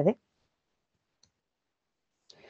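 A woman's voice finishes a word at the start, then near silence broken by one faint, short click a little over a second in: a mouse click advancing the presentation slide.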